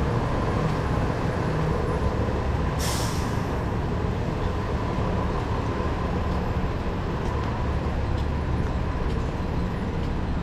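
City bus engine running with a steady low rumble and faint whine, with a short hiss of its air brakes about three seconds in.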